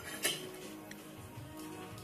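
A light clink of dishes and cutlery on a table about a quarter second in, over faint background music.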